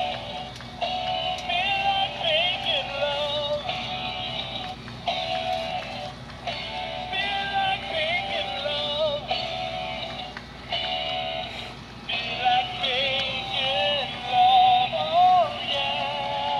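Gemmy animated plush chef pig playing its song through its small built-in speaker: a high, electronic-sounding singing voice over music, thin and tinny with no bass, in short phrases with brief gaps between them.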